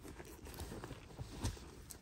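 A hand rummaging through the contents of a handbag: soft rustling with small clicks and knocks, and one louder knock about one and a half seconds in.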